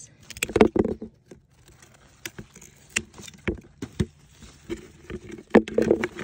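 Scissors snipping okra pods from the stalk, with pods dropping into a plastic bucket: a series of irregular sharp clicks and knocks, the loudest about half a second in and again near the end.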